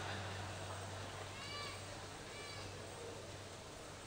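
Faint background with a steady low hum, and two short, high calls that rise and fall in pitch, about a second apart, from a small animal.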